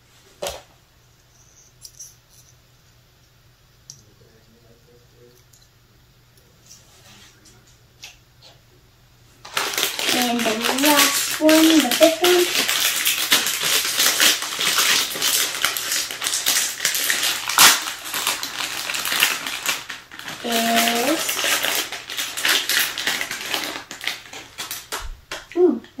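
Crinkly plastic blind-bag packet being torn open and handled, a loud, dense crackling that starts about ten seconds in and runs until just before the end. Before it there are only a few faint clicks.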